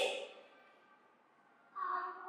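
A voice trailing off, then about a second of near silence, then a soft voice starting again near the end.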